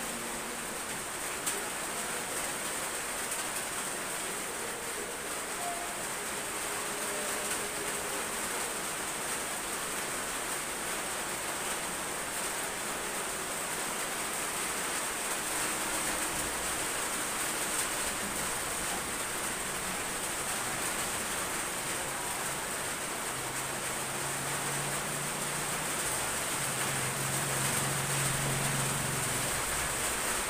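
Fairly heavy rain falling steadily, an even hiss with no break. A faint low hum comes in for the last several seconds.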